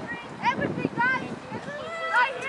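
Distant voices shouting across an outdoor soccer field: several short, high calls, one after another.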